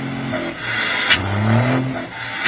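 An engine revving up, its pitch rising over about a second and a half, with a short hiss about a second in.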